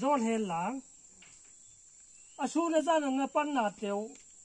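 A man's voice speaking in two short stretches with a pause between, over a steady high-pitched cricket chorus.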